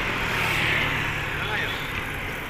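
Steady road traffic noise: motor vehicles running along a busy street, with a low engine hum underneath.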